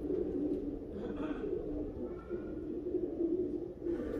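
Domestic pigeons cooing steadily, a low continuous coo.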